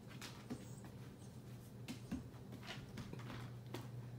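A puppy's claws and paws scuffing and tapping on a hardwood floor as it spins chasing its tail: a handful of faint, irregular scrapes and taps.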